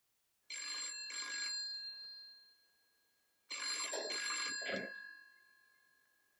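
Telephone bell ringing twice, each ring a quick double burst that fades away.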